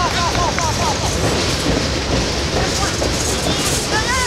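Wind rumbling on the microphone, with voices calling out across the field during the first second and again near the end.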